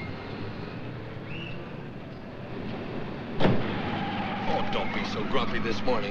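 City street traffic noise, then a single sharp thud about three and a half seconds in, a taxi door being shut. After it comes a steady low engine hum from inside the moving cab.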